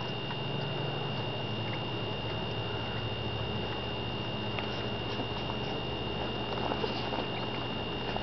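Newborn puppies suckling at their mother's teats, with faint short clicks and smacks scattered through, over a steady hiss.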